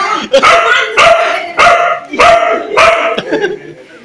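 Dog barking repeatedly, about five barks in quick, even succession, then quieter near the end.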